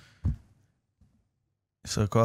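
A man's breathy exhale trailing off, then a brief low vocal 'mm' about a quarter second in, followed by a pause; a man's voice starts speaking again near the end.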